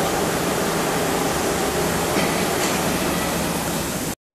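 Steady mechanical noise of a forklift mast assembly workshop floor, with a low hum and no distinct impacts.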